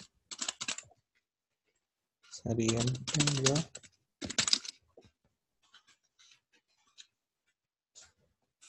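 Computer keyboard typing in short runs of keystrokes, fainter and more scattered in the second half. A voice speaks briefly in the middle.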